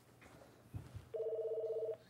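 Electronic desk telephone ringing: a fast warbling two-tone trill that starts a little over a second in and lasts just under a second. A couple of faint knocks come just before it.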